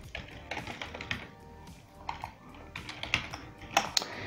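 Computer keyboard typing: a run of irregular keystrokes, with one sharper click near the end.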